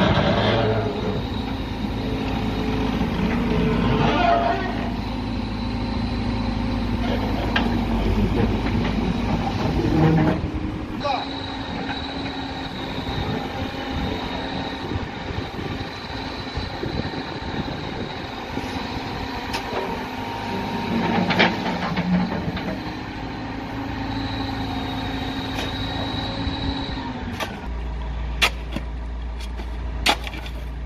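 Caterpillar 428 backhoe loader's diesel engine running steadily as the backhoe digs, with a thin high whine over the drone and a few sharp knocks. The sound changes abruptly near the end.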